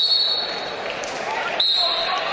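Referee's whistle blown in two short, steady, high-pitched blasts, one right at the start and another about a second and a half later, starting the second period of a wrestling bout. The murmur of an arena crowd runs beneath.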